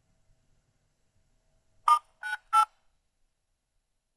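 Three short telephone keypad (DTMF) dial tones in quick succession, about two seconds in: the voicemail access code being dialed into a Grandstream UCM PBX.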